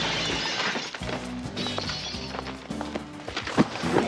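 Background music with a run of stepped bass notes, over a scuffle with wooden thumps and knocks, loudest about three and a half seconds in.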